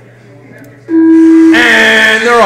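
Race start signal: a loud, steady electronic beep starts abruptly about a second in, followed by a man's drawn-out call over the PA as the race gets under way.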